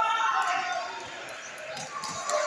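Indistinct voices in a large sports hall, with a few short knocks near the end.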